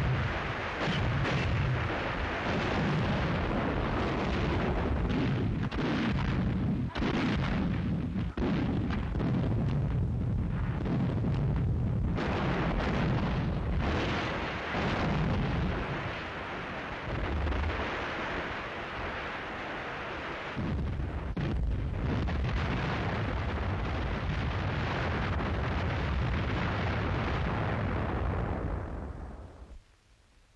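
Artillery barrage from massed German batteries: a continuous run of overlapping gun reports and shell bursts that fades out over the last couple of seconds.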